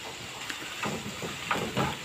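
Chorizo slices and an onion-tomato sofrito sizzling steadily in a frying pan, with a few light scrapes of a spatula in the second half as the stirring begins.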